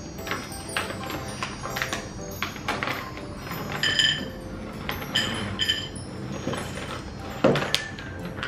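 Rustling of a plastic ziplock snack packet and the clicks of seaweed almonds tipped out onto a plate and handled, with a louder clatter near the end. Background music with a few short bell-like notes plays under it.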